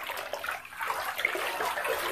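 A hand swishing and stirring bathwater in a filled bathtub, with an irregular run of small splashes.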